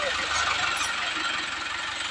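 Mahindra Arjun tractor's diesel engine running steadily.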